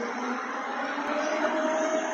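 A vehicle running close by: a steady noisy hum with a faint steady whine through it.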